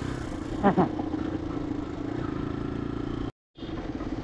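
Sport motorcycle engine running at a steady cruising speed while riding, with road and wind noise, and a brief sharper sound a little under a second in. The sound cuts out completely for a moment about three seconds in.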